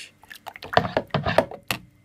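A metal spoon stirring juice in a container, clinking and scraping against the sides in a quick run of sharp knocks. The last knock, near the end, is the sharpest.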